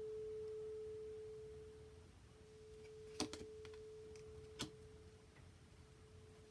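A single pure, steady tone hums quietly and slowly fades. Two light taps, about three and four and a half seconds in, come as tarot cards are handled and laid on the wooden table.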